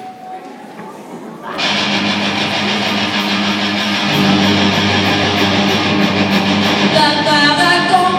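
Live rock band with electric guitars and drums starting a song: after about a second and a half of quiet, the full band comes in loudly and grows fuller about four seconds in, with a melody line entering near the end.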